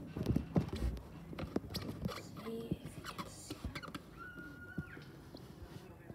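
Irregular soft clicks and knocks of a phone being handled and moved against a window sill. A faint brief tone sounds about four seconds in.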